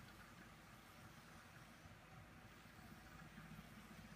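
Very faint, steady low whirr of a Wonder Workshop Dash robot's wheel motors as it rolls across paper, drawing with a marker; otherwise near silence.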